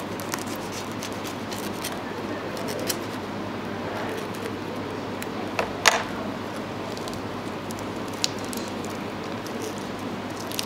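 A small knife cutting open a raw prawn on a plastic cutting board: faint crackling cuts and light taps. There is one sharp click about six seconds in and a smaller one a little after eight seconds, over a steady room hiss.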